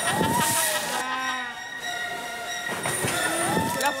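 Orca calling with high squeals that glide up and down in pitch, then a held, many-toned squeal about a second in. Water splashes about half a second in.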